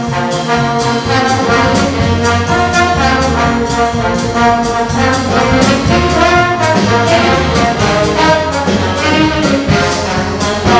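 Jazz big band playing live: saxophones, trumpets and trombones playing together over upright bass and a drum kit keeping a steady beat.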